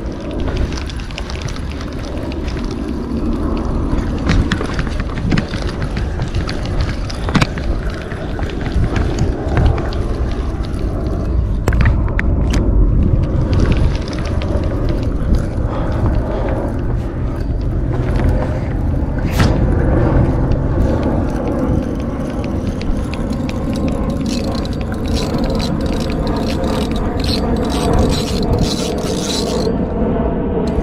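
Wind buffeting the microphone in a steady low rumble, with frequent short clicks and scrapes from a spinning reel being cranked while a fish is played in.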